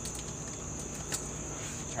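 Insects chirring steadily at a high pitch in the background, with a few faint clicks, the sharpest about a second in.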